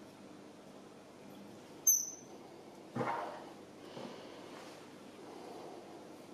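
Quiet handling sounds: a short high squeak about two seconds in, a knock a second later and a lighter tap, with faint rustling between them.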